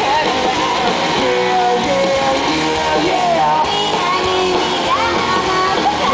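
A rock band playing live and loud: electric guitars, bass and drums in full swing.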